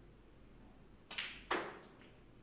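Snooker shot: the cue tip clicks against the cue ball about a second in, then a louder, sharper clack as the cue ball strikes an object ball, followed by a faint third tick.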